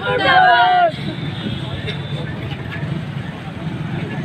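A woman shouting loudly, cut off about a second in, followed by a crowd murmuring and a low background rumble.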